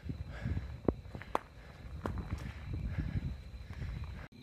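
Footsteps of a hiker walking on a dirt path, an irregular run of low thuds with a few sharp clicks.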